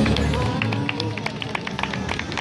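A street rock band's last electric-guitar chord ringing out and fading away. Scattered hand claps and crowd voices start up over it about half a second in.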